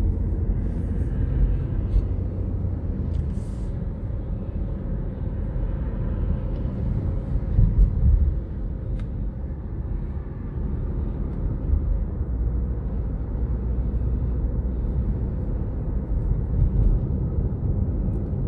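Car driving at road speed, heard from inside the cabin: a steady low rumble of tyre and engine noise, swelling briefly louder about eight seconds in.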